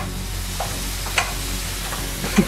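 Salmon and chicken frying in oil in pans, a steady sizzle, with two light clicks of a utensil against the pan about half a second and a second in.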